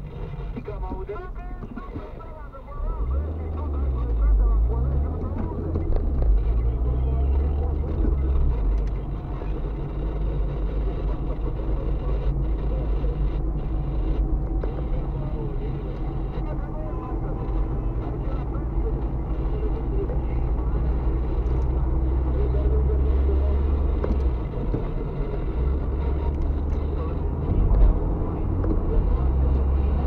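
Car engine and road noise heard from inside the cabin as the car accelerates out of a slow curve. The engine gets louder about two and a half seconds in, and its pitch rises and falls a few times over the next several seconds, then settles into a steady cruising hum.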